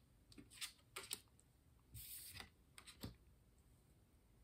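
Faint flicks and taps of a tarot deck being shuffled by hand: a few light clicks in the first half, a short rustle about halfway, and one more click a second later.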